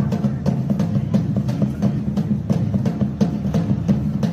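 Live drumming on two strapped-on hand drums, a large bass drum and a smaller drum, beaten in a fast, steady rhythm.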